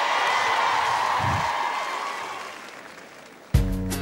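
Studio audience cheering and applauding, swelling and then fading away. About three and a half seconds in, a guitar-led backing track cuts in suddenly.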